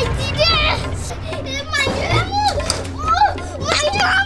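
A young girl's high-pitched voice crying out in repeated wordless wails and whimpers.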